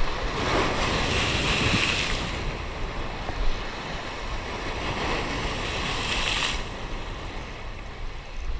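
Surf breaking and washing over the rocks of a rocky shoreline, with two waves surging in, one just after the start and one about five seconds in. Wind buffets the microphone throughout.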